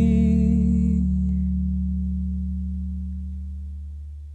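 Final held chord of a song fading out. The upper notes drop away about a second in, and the low notes ring on, fading steadily.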